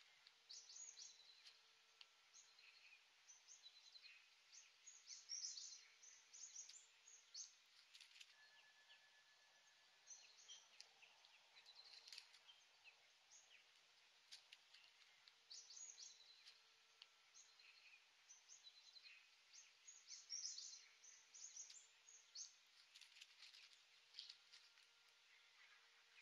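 Faint chorus of wild birds: many short, high chirps and twitters from several birds, coming in clusters every few seconds over a quiet outdoor background.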